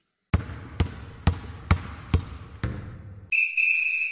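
A basketball dribbled six times at about two bounces a second, then a single high ringing tone that fades slowly.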